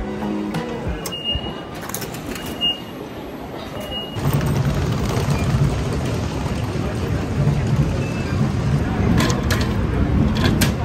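A station ticket machine gives three short high electronic beeps about a second and a half apart while waiting for cash or card. From about four seconds in, a louder steady low rumble of background noise takes over, with a few sharp clicks near the end.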